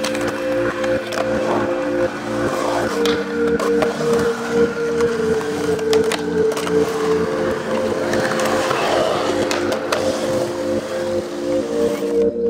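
Music with held chords that change every few seconds, mixed with skateboard sounds: urethane wheels rolling on concrete and metal trucks grinding on the bowl's coping, with sharp clacks of the board.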